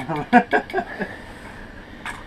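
A few indistinct voice sounds, then the steady hiss of a gas burner running.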